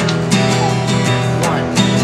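Acoustic guitar strummed in a straight, even beat: an unsyncopated strum played as an example.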